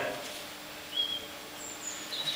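A quiet hall with a faint steady hum and two brief bird chirps, one about a second in and a higher, slightly falling one near the end: recorded birdsong for a garden stage set.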